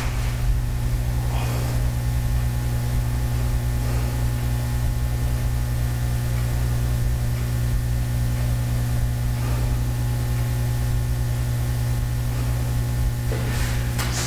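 A steady low electrical or motor hum with a faint hiss, unchanging throughout.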